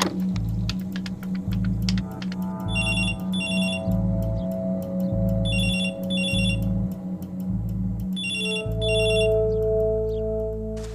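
Background music with a pulsing bass line, over which a telephone rings in double rings, three times, about three seconds apart.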